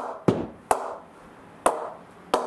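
New SG Sunny Gold willow cricket bat tapping a red leather cricket ball up off its face: four sharp knocks at an uneven pace, each with a short ring. The bat is straight out of the packet, not yet oiled or knocked in, and gives a slightly high-pitched sound.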